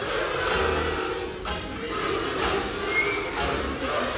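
Many children blowing small plastic toy calls together along with music: a dense, continuous mass of sound.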